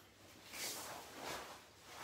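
Two faint, soft noises from a karate practitioner moving through a punch and back into guard, about half a second and a second and a quarter in.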